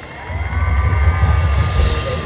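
Wind buffeting a prop-mounted action camera's microphone, a low rumble that swells about half a second in, with faint held tones from the marching band above it.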